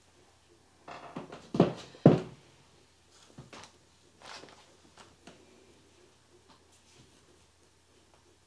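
Handling noises as a pair of tights is put down on a side table and another pair picked up: two louder knocks about a second and a half and two seconds in, then a few faint rustles and taps, fading to room tone in the second half.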